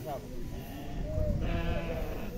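A goat bleats once, a long bleat starting about a second and a half in, over faint background voices.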